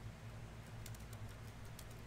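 Faint computer keyboard typing: a few quick, light key clicks in the second half, over a steady low hum.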